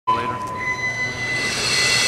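Whine of a small combat robot's electric motors: steady high tones, with a hiss building from about halfway through.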